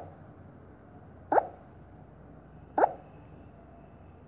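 A child hiccuping: short, sharp 'hic' sounds that sweep quickly upward in pitch, one about every second and a half.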